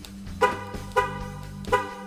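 Three short horn chirps from a 2012 Dodge Ram as the lock button on its factory key fob is pressed three times, the lock-lock-lock sequence that triggers the remote start. Background rock music plays under them.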